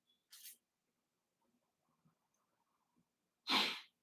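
A quiet room pause with two short breaths from a man at a desk: a faint one just after the start and a sharper, louder one near the end.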